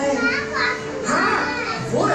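A crowd of young children talking and calling out at once, many high voices overlapping.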